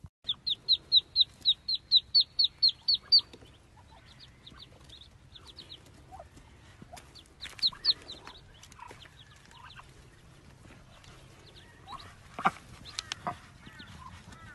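Ducklings peeping: a fast run of loud, high peeps, about four a second, for the first three seconds, then scattered quieter peeps and a few sharp clicks near the end.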